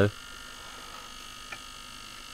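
Faint steady electrical hum, with one light tick about a second and a half in.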